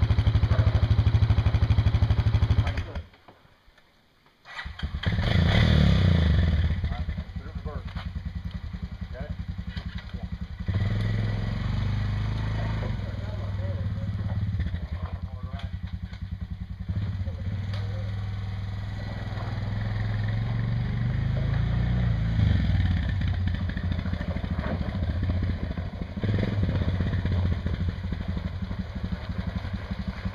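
Small Honda ATV engine running, then stopping about three seconds in. After a second and a half of near silence it is started again, surges briefly, and settles into a steady idle with small revs.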